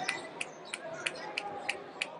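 Basketball being dribbled on a hardwood court: evenly spaced bounces, about three a second.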